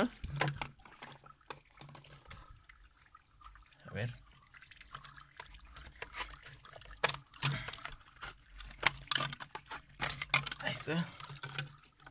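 Water splashing and dripping as a dirty aquarium filter is rinsed in a concrete sink, with irregular knocks and clatter from the filter's parts being handled and pulled apart, busiest in the second half.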